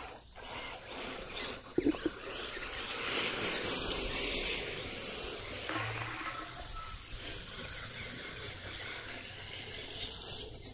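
RC drift car sliding across a concrete driveway: a steady hissing rush of hard tyres scrubbing and the small electric drivetrain, loudest a few seconds in. A couple of sharp clicks come just before it.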